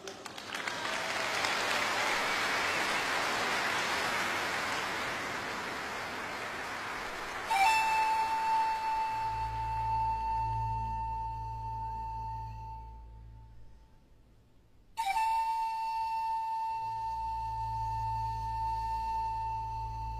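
Audience applauding, then a pan flute plays a long held note that slowly fades, and after a short pause a second long held note, over a low sustained orchestral bass.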